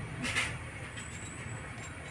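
A metal ladle scraping briefly in a small brass bowl a moment in, over a steady low rumble.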